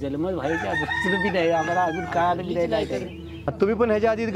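A rooster crowing: one long drawn-out call starting about half a second in, behind a man's speech.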